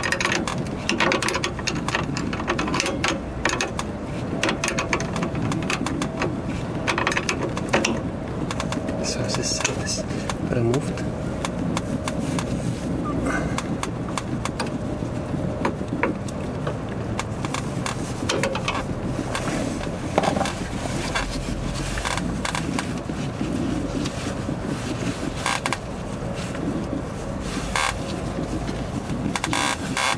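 A wrench working a brake line fitting at a metal frame bracket, with repeated short metallic clicks and scrapes.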